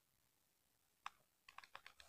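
Near silence, then a handful of faint, short ticks of a ballpoint pen writing on paper in the second half.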